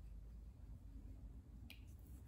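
Near silence: low room hum, with one short sharp click near the end.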